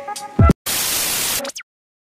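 Electronic music ending on a heavy bass hit about half a second in, followed by a burst of white-noise static lasting under a second that cuts off suddenly, with a brief sliding tone at the end. This is the sound of a glitch-style logo sting closing the video.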